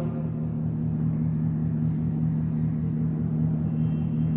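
A steady low hum with a rumble beneath it, unchanging throughout.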